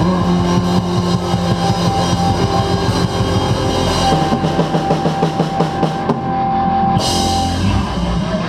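Live rock band playing an instrumental stretch: drum kit with cymbals, electric guitars and bass, with a long held note through the middle. The cymbals drop out briefly about six seconds in, then crash back.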